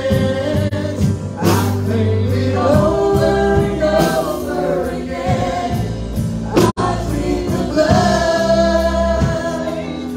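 Live church worship band playing a gospel song, a woman leading the singing over drums, bass, keyboard and acoustic guitar. The audio drops out completely for a split second about two-thirds of the way through.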